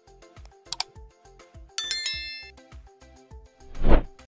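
Subscribe-button animation sound effects over a steady music beat: a sharp double mouse click about three-quarters of a second in, then a bright bell chime that rings out and fades. Near the end a loud swelling whoosh rises to a peak.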